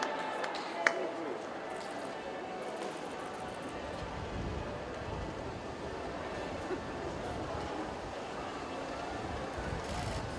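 Indistinct chatter of a crowd of onlookers, steady and without clear words, with a few sharp clicks in the first second.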